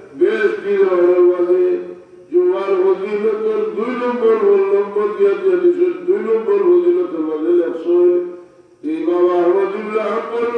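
A man chanting in a sung, melodic voice with long held notes, pausing briefly for breath about two seconds in and again about eight seconds in.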